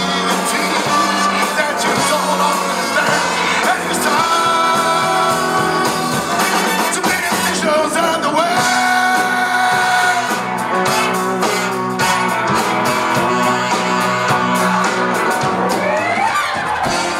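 Male vocalist singing over a live rock-and-roll band, with long held notes.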